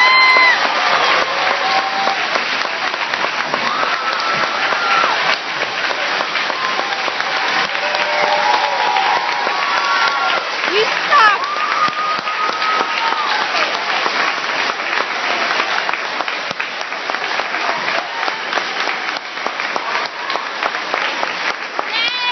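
A large audience applauding steadily, with shouts and cheers from many voices rising over the clapping now and then.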